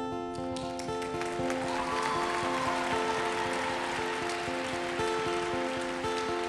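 Live acoustic guitar picking the opening notes of a folk song, each note ringing on under the next. Behind it is a hiss of audience noise that swells about two seconds in.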